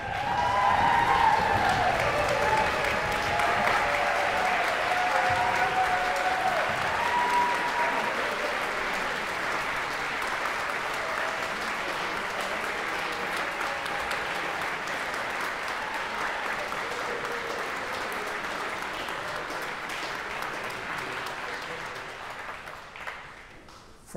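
Audience applauding, loudest in the first couple of seconds, then slowly tapering off and fading out near the end.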